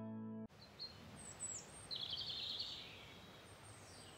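A held music chord cuts off suddenly half a second in, giving way to outdoor ambience with birds chirping: a few brief high chirps and a short trill about two seconds in.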